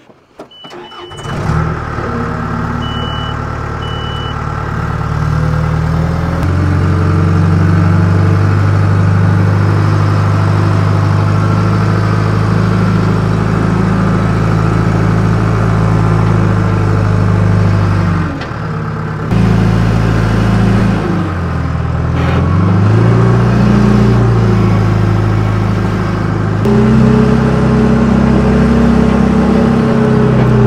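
John Deere 310G backhoe loader's diesel engine running under load as it drives and pushes dirt with the front bucket, the engine note rising and falling with the throttle, with a dip about two-thirds of the way through and a rise near the end. A few short high beeps sound in the first seconds.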